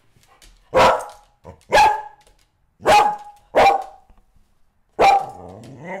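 A dog barking: about five short, loud barks roughly a second apart.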